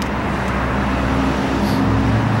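Road traffic: a motor vehicle's engine humming steadily under a wash of road noise.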